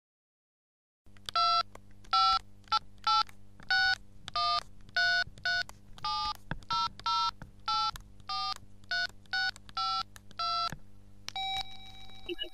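Telephone keypad tones being dialled: a long run of about seventeen short two-note beeps, roughly two a second, over a low steady hum, starting about a second in after silence. Near the end a steady tone takes over.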